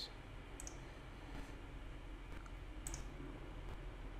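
A few faint computer mouse clicks, spaced about half a second to a second apart, over a low steady hum.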